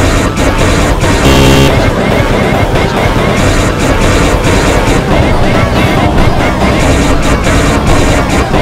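Many Sparta remix tracks playing at once: a loud, dense jumble of overlapping electronic music beats, sampled cartoon voices and sound effects. A held note stands out briefly about a second in.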